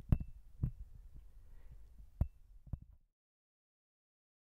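About five soft, low knocks spaced unevenly over three seconds, two of them with a faint high ping. Then the sound cuts off into complete silence.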